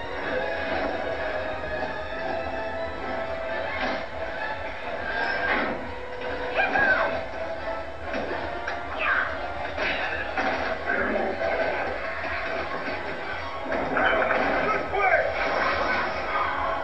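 Animated movie soundtrack playing through a TV's speaker: music with voices over it, swelling louder about seven seconds in and again near the end.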